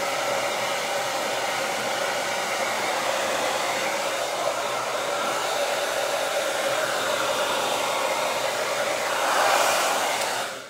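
Handheld electric hair dryer running steadily: a continuous rush of air with a steady hum in it. It gets a little louder near the end as the airflow shifts.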